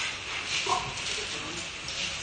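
Background of a press-conference room: steady hiss with faint, brief voices, the clearest a short murmur less than a second in.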